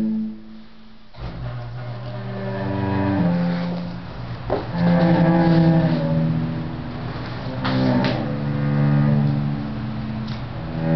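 Cello played with the bow: long, held low notes that swell and fade, moving slowly from pitch to pitch, after a brief lull about a second in.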